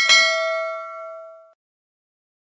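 Notification-bell 'ding' sound effect struck once as the bell icon is clicked. It rings with several steady tones and dies away after about a second and a half.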